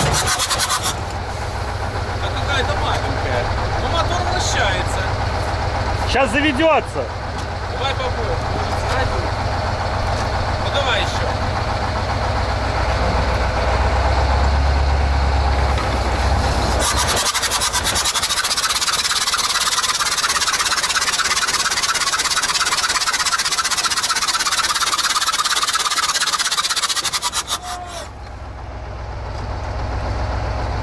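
A T-74 crawler tractor being towed by a KrAZ truck to turn its engine over: the truck's diesel runs under load while the tractor's steel tracks clank, with squeals a few seconds in. About seventeen seconds in, the low rumble drops away and a fast metallic rattling clatter takes over for about ten seconds, then eases.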